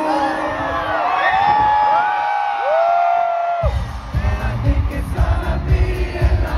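Live pop concert music played over a stadium PA, recorded from among the crowd, with a crowd singing and whooping along. Held sung notes carry a bass-less breakdown, then a heavy bass beat drops back in a little over halfway through.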